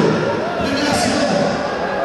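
Voices calling out over one another in a large, echoing sports hall, with a background of crowd noise.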